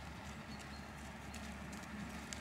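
Faint hoofbeats of a ridden dressage horse on a sand arena, heard as scattered soft clicks over a low steady background noise.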